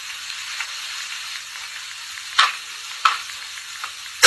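A congregation clapping: an even hiss of many hands, with two sharper claps standing out a little after two seconds and at about three seconds in.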